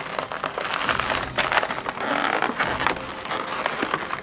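Thin clear plastic blister tray of an action-figure package crinkling and crackling as hands flex it and work the figure out. It is a dense, continuous run of small crackles and clicks.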